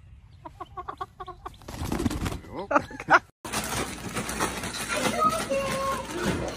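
A chicken clucking in a quick run of short calls, then louder, higher calls; the sound breaks off abruptly a little over three seconds in, and a noisier, busier stretch with a voice follows.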